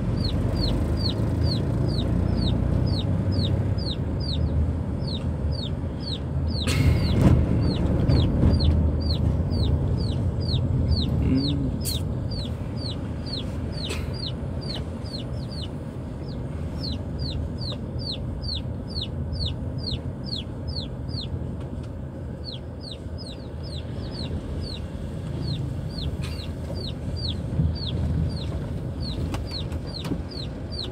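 Chicken peeping over and over inside a moving car: short, high, falling calls, about two to three a second, with a brief pause late on. Car engine and road noise run underneath, with a louder rumble about seven seconds in.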